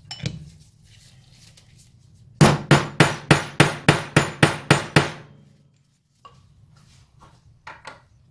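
A hammer driving an aluminium drift to tap a wheel-bearing race into a classic Mini rear hub: about eleven quick, evenly spaced metallic blows, about four a second, each with a short ring. The blows seat the race flush and level in the hub.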